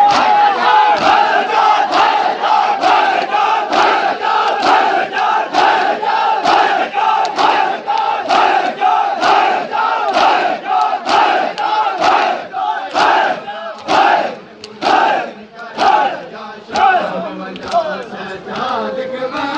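A crowd of mourners performing matam, men slapping their bare chests in unison at about two strokes a second, with a loud group shout on each beat. Near the end the strokes thin out and come more unevenly.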